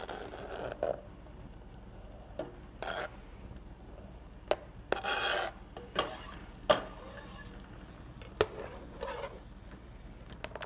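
A knife blade scraping corn kernels off a plastic cutting board into a stainless steel pot, then a spoon stirring vegetables in the pot: a run of short scrapes and sharp clicks of metal on the pot, with a longer scrape about five seconds in.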